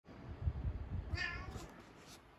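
Domestic grey-and-white tabby cat giving one short meow about a second in, calling to get its owner out of bed. Soft low thumps run underneath for the first second and a half.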